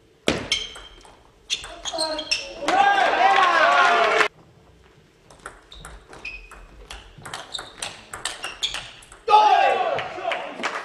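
Table tennis rally: the celluloid/plastic ball clicking off the bats and bouncing on the table in a quick, uneven series of sharp knocks, each with a short high ring. Voices come in between the exchanges and loudly near the end as the point finishes.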